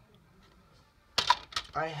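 Three quick sharp clicks of hard plastic graded-card slabs knocking together as one is taken from a wooden storage box, followed by a man starting to speak.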